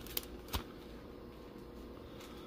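Two brief, quiet crinkles of a foil trading-card pack wrapper being handled, the first about a fifth of a second in and the second about half a second in.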